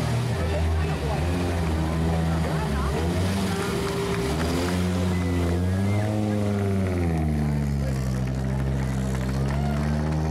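Audi quattro rally car's turbocharged five-cylinder engine running at low revs as the car is driven slowly, its note rising briefly about six seconds in as it pulls away and then settling to a steady lower pitch.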